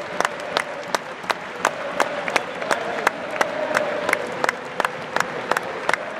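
Crowd applauding, with one person close by clapping steadily about three times a second over the wider clapping.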